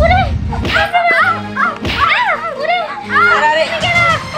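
Edited-in comic soundtrack: short sliding, warbling pitched sounds rising and falling one after another, with a sharp crack at the start and another a little under two seconds in.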